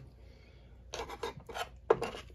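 Fingers handling a plastic slot-car chassis: a short run of scrapes and rubs about a second in, ending in a sharp click.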